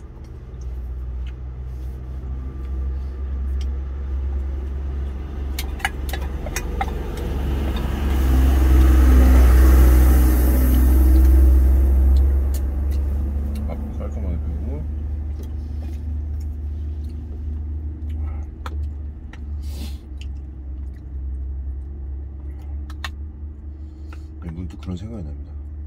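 Steady low vehicle rumble heard from inside a truck cab, with a passing vehicle swelling loudest from about eight to thirteen seconds in and then fading. A few sharp clicks of a spoon against a stainless steel food container.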